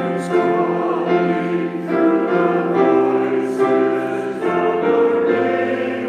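Slow church choral music: sustained chords held for a second or two each before moving to the next, with singing voices.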